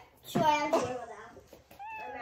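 A house cat meowing twice: a long meow that fades away, then a short rising one near the end.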